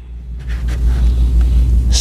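Low rumbling handling noise from a body-worn microphone as the wearer leans over a lectern. It swells about half a second in and carries a faint rustle above it.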